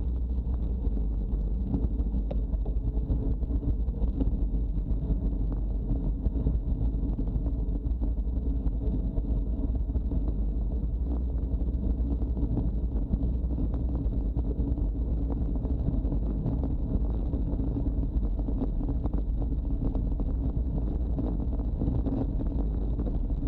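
Steady wind rush and road rumble on the microphone of a camera riding on a moving road bike, with a faint high whine throughout.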